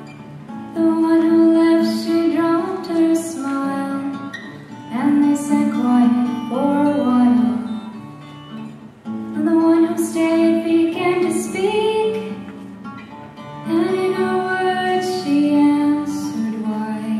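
A young woman singing a slow solo song into a handheld microphone, with instrumental accompaniment beneath. She sings in phrases a few seconds long, with short breaks between them.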